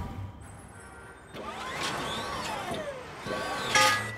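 Street traffic sound effects: a vehicle passing with a falling pitch, then a short loud hit just before the end.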